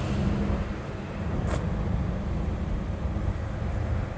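Low, steady outdoor rumble with one faint click about one and a half seconds in.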